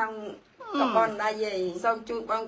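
A woman's voice speaking, breaking off briefly and then drawing out one long syllable that falls in pitch and then holds.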